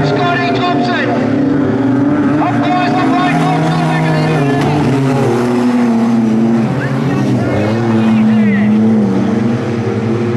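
Wingless sprint car engines racing on a dirt oval, a loud steady run whose pitch rises and falls as the drivers lift for the turns and get back on the throttle.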